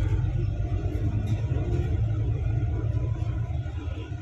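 Steady low rumble of a moving bus, engine and road noise heard from inside the vehicle.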